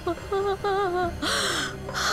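A woman crying: short wavering sobbing moans, then a sharp gasping breath about halfway through, over a low steady hum.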